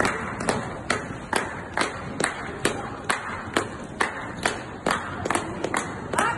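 Hands clapping in a steady, even rhythm, a little over two claps a second.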